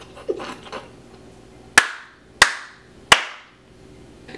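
Three single sharp hand claps, about two-thirds of a second apart, each followed by a short room echo. They come after a little soft laughter.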